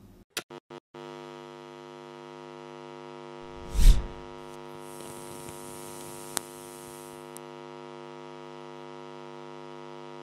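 Sound effects for an animated logo: a few quick clicks, then a steady electric hum with many overtones. A deep boom comes about four seconds in, followed by a hiss and a single sharp crack around six seconds.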